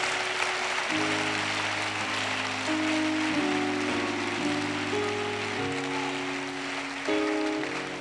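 Church keyboard playing sustained chords that change every second or so, over a steady hiss of the congregation clapping.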